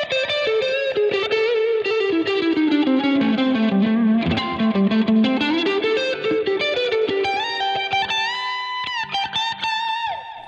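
Fender Stratocaster on its neck pickup, played through a Fractal Axe-FX II clean preset with a light blues overdrive, delay and reverb. It plays a bluesy single-note lead line that runs down and back up, then ends on held notes bent upward.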